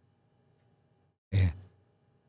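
A man's voice saying one short word after a pause of about a second; the rest is near silence.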